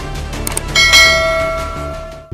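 Notification-bell chime sound effect of a subscribe-button animation: a short click, then a single bright ding about three-quarters of a second in that rings and slowly fades, over background music.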